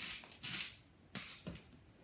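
A few short scraping and rustling sounds as a clear acrylic quilting ruler and cut upholstery fabric are slid and handled on a cutting mat, about four in quick succession.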